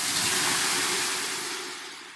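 Ladleful of water thrown onto the hot stones of a sauna stove, hissing into steam: a sudden loud sizzle that fades away slowly.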